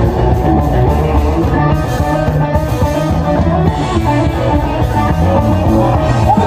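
Live rock band playing an instrumental passage: electric guitar over bass guitar and drum kit, loud and continuous.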